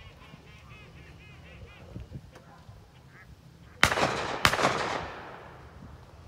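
A quick run of honking waterfowl calls in the first two seconds, then two loud sharp gunshots about half a second apart, each with a trailing echo.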